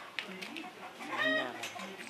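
A single short animal call about a second in, rising and then falling in pitch. It is the loudest sound here, preceded by a few sharp clicks.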